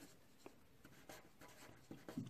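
Faint scratching of a felt-tip marker writing on paper, with a short tick about half a second in.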